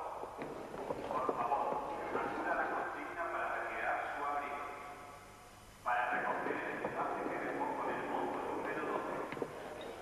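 A man's voice over a railway station public-address loudspeaker, making an announcement in two long stretches with a short pause about five seconds in.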